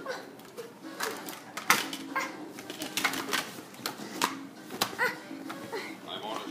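Hard plastic toy parts clicking and knocking against a wooden table as they are handled, in quick irregular strikes, some sharper than others.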